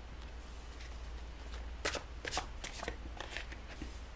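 A deck of tarot cards being shuffled by hand, heard as a quick run of short card snaps starting about two seconds in.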